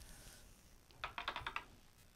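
A quick run of about six light, sharp clicks, a little over a second in, like small hard objects tapping together.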